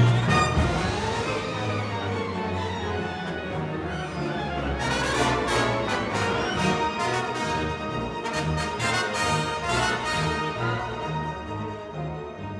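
Orchestra with brass, strings and piano playing a jazz-inflected concerto movement. It opens with a loud accented chord, runs on over punchy bass notes and a stretch of crisp rhythmic strokes, and eases off near the end.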